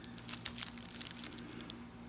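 Faint crinkling and light clicks of shrink-wrap plastic on a soap bar being handled in gloved hands.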